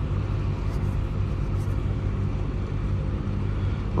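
A motor running with a steady low rumble and a constant hum, unchanging throughout.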